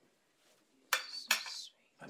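Cutlery clinking against dishes: two sharp clinks about a second in, the second following close behind the first.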